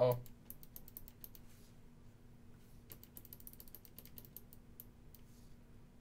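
Quick, faint clicking from fingers working the small DIP switches on a breadboard computer's RAM module, in two runs, the second starting about three seconds in.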